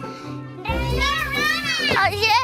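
A high, child-like voice over background music: after a brief dip, one long call glides up and then down.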